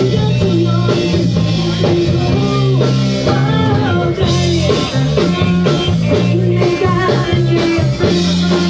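A rock band playing live: electric guitars, bass and drums, with a woman singing lead in a loose garage-band style.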